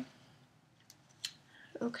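A quiet pause with two faint, sharp clicks about a second in, from objects being handled while reaching for something; a woman starts speaking near the end.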